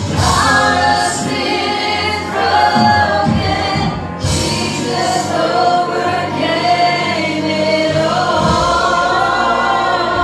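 Live gospel music: a church choir singing with band accompaniment, including electric guitar and bass.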